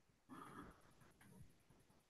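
Near silence, with only a faint, indistinct trace of background noise in the first second or so.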